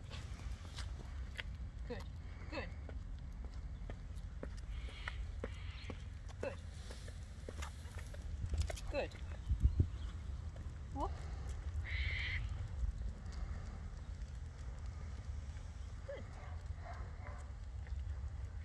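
Footsteps of a person and a small dog walking on an asphalt road: light, irregular clicks and scuffs over a steady low rumble.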